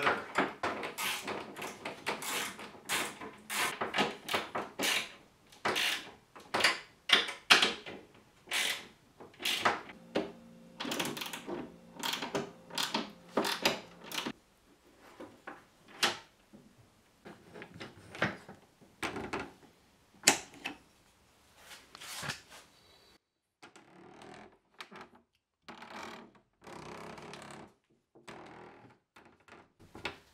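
A run of sharp wooden clicks and knocks from a handmade wooden cabinet lock being put back together and worked by hand, its wooden parts clacking against each other. The clicks come quickly and loudest for about the first fourteen seconds, then more sparsely and faintly.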